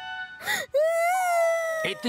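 A cartoon character's high-pitched crying: a short sob about half a second in, then one long wavering wail that breaks off just before the end.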